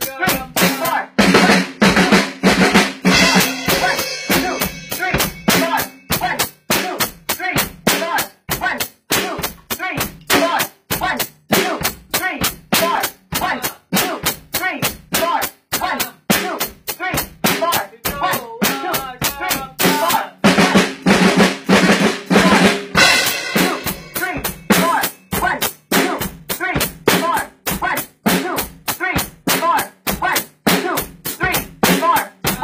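A drum kit played hard and fast, snare and bass drum strokes coming several times a second in a steady run. Brighter, ringing stretches come near the start and again about two-thirds of the way through.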